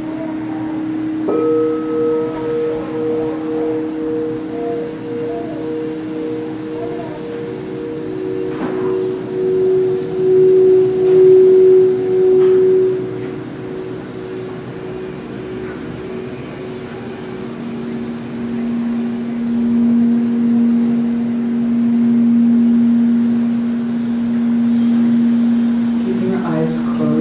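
Singing bowls ringing in long, pure, overlapping tones, each with a slow wobble. A low tone fades while a higher one enters about a second in, a middle tone swells a third of the way through, and a lower tone comes in about two-thirds of the way through and holds.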